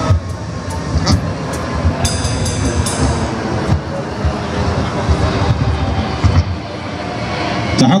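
Heavy metal band playing live through stage amps: distorted electric guitars droning over drums, with repeated bass-drum hits and a few ringing cymbal crashes between about one and three seconds in.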